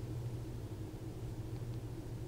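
Steady low hum with faint background hiss: room tone with no other sound.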